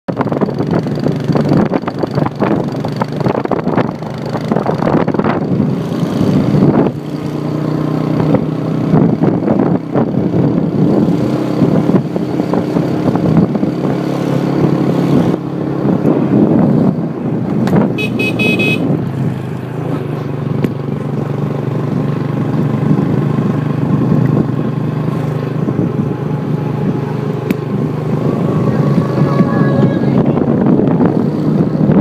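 A motorcycle engine runs steadily as it rides along. About 18 seconds in, a horn gives one short beep.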